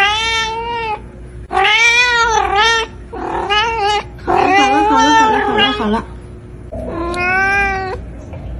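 A domestic cat meowing over and over: about six long, drawn-out meows that bend up and down in pitch. The longest, in the middle, wavers into a yowl.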